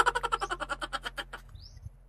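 A bird's rapid rattling call, about a dozen short notes a second, fading away over a second and a half, then a single brief rising chirp.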